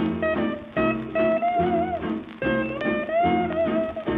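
A 1940s Teichiku 78 rpm record playing an instrumental passage of a cowboy song: a band with a melody line whose notes slide up and down between steady phrases.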